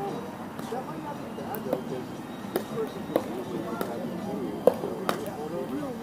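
Sharp pops of pickleball paddles striking the ball, about seven irregular hits, the loudest a little past the middle, over a background of people's voices.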